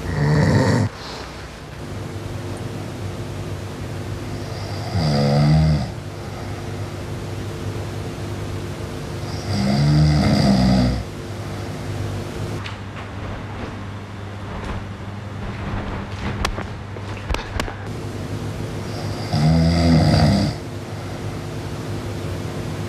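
A man snoring in his sleep: four loud snores, roughly five seconds apart, over a steady hum, with a few faint clicks between the third and fourth snore.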